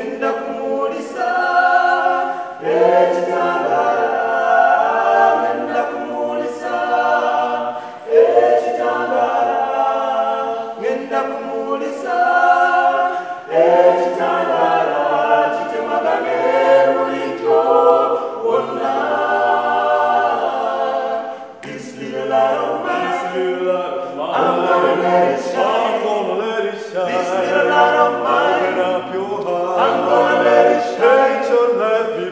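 A cappella gospel vocal group of four men and a woman singing in harmony, with hand claps keeping time about once a second.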